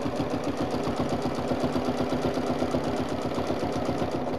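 Domestic sewing machine starting up and stitching at a steady, fast, even rhythm during free-motion ruler quilting.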